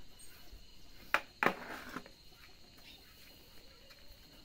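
Push broom scraping through ground feed meal on a tiled floor, two quick strokes about a second in. A faint, steady high insect trill runs behind.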